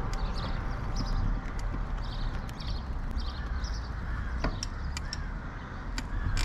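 Birds calling in short repeated calls over a steady low rumble, with scattered light rattling clicks.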